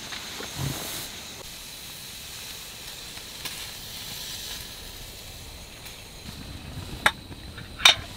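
Camping stove burner hissing steadily under a kettle, with two sharp clicks near the end.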